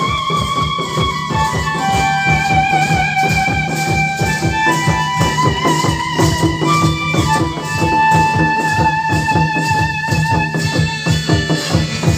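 Traditional folk music for a Karam dance: several two-headed barrel drums (mandar) beaten fast and densely, with a high, wavering melody line of long held notes over them.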